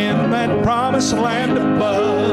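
Gospel song sung by a mixed group of men's and women's voices with instrumental backing, held at a steady level.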